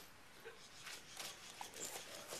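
Quiet outdoor background with a few faint rustles and clicks.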